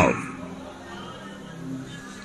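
A man's voice through a microphone ends a prayer line with a falling glide and dies away in the hall's reverberation. Then a congregation faintly repeats the line in unison.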